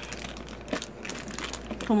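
Clear plastic packaging bag crinkling as it is handled, a run of irregular crackles.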